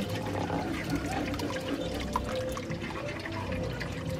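Thick blended pineapple, carrot, beetroot and ginger juice pouring steadily from an aluminium pot into a metal strainer over a metal bowl.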